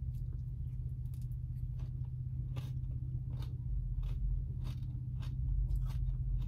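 A neighbouring truck's engine idling, a steady low rumble heard from inside a car, which the eater calls really loud. Small clicks of a plastic spoon and of eating sit on top of it.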